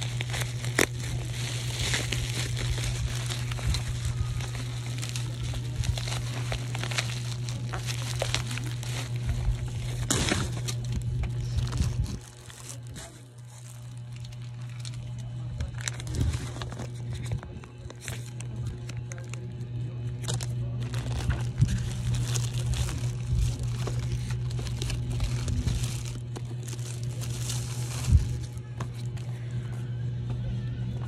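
Plastic bubble wrap crinkling, crackling and tearing as a parcel is unwrapped by hand, in an irregular run of handling noise with a brief lull partway through.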